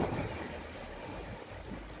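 Wind blowing across the microphone, a steady noise with low buffeting, over sea waves washing in the background.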